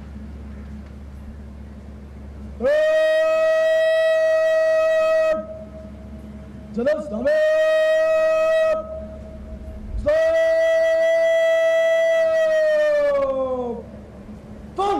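A parade commander's drawn-out shouted words of command, carried over a loudspeaker: three long held calls, each scooping up into one steady pitch, the last and longest falling away at its end.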